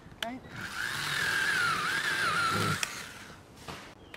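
Handheld battery power saw cutting through a tree branch. It runs for about two and a half seconds, its motor whine wavering as the blade bites into the wood, then stops abruptly.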